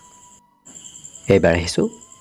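A brief pause in a man's spoken narration, with a steady, high-pitched pulsing trill underneath. The voice comes back with a short word about a second and a half in.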